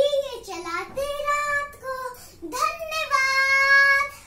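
A young girl singing unaccompanied: a few short phrases, then one long held note near the end that stops abruptly.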